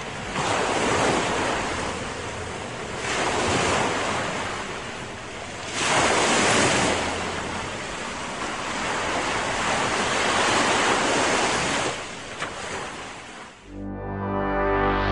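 Sea surf: waves breaking and washing in, swelling and easing several times, with the strongest surge about six seconds in.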